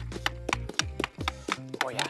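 Quick sharp clicking, about five clicks a second, of hockey stick blades tapping a ball and the plastic sport-court tiles, over background music.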